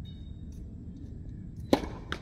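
Tennis racket striking the ball once in a forehand, a single sharp pop near the end, over a steady low background rumble.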